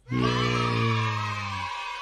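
A single long, drawn-out vocal "nooo" that sags slightly in pitch and stops about three-quarters of the way through, over music.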